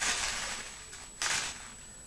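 Paper spice packet rustling as coriander seeds are scooped out of it with a teaspoon, in two short bursts about a second apart.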